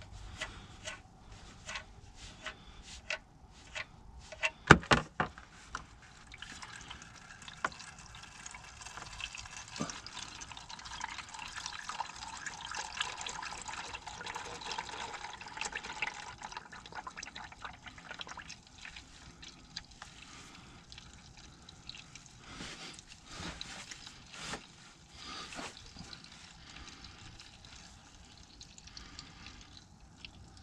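Clicks and knocks as the drain plug of a Jeep Grand Cherokee's oil pan is worked loose, the loudest about five seconds in. Used motor oil then pours from the pan into a drain pan, splashing steadily for about ten seconds before thinning to a trickle.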